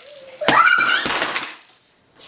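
A sharp pop about half a second in as the game's air-powered launch pad knocks the stacked blocks over, with a clatter. A child's voice rises in a squeal over it and fades out.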